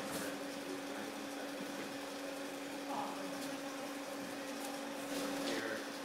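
A steady low electrical-mechanical hum, one tone with its octave above, running evenly throughout.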